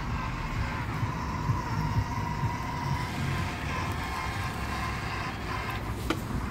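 Ambrogio L60 robot lawn mower running on grass, its electric motors giving a steady whine as it drives and turns.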